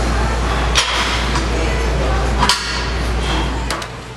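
Gym sound during a barbell squat set: a steady low rumble under general room noise, with two sharp metallic clanks about a second and a half apart from the loaded barbell and its plates.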